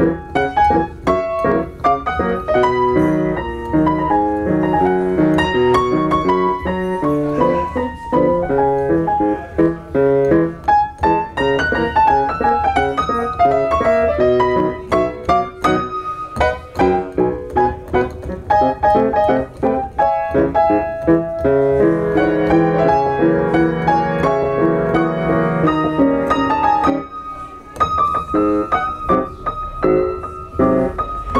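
Solo piano played by hand, a steady flow of notes with melody over lower chords, broken by a short lull near the end.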